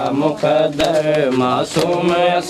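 Men singing a Punjabi noha, a Muharram lament in a slow wavering melody, with occasional hand slaps on the chest (matam) keeping time.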